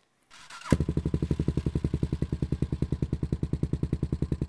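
Motorcycle engine running at idle with an even, rapid beat, starting suddenly about three quarters of a second in after a moment of silence.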